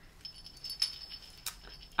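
Small metal bell on a plush bag charm jingling faintly as the charm is handled: a thin high ringing with a few light clicks.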